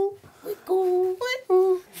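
A voice singing or humming short held notes at one pitch, three in a row with a quick upward slide into the last.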